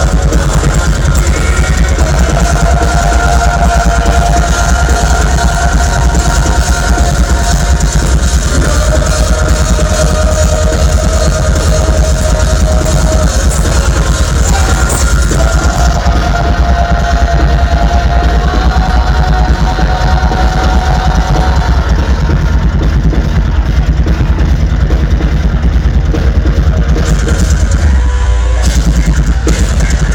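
Progressive metal band playing live: distorted guitars, bass and drums in a loud, dense wall of sound, with long held notes over it.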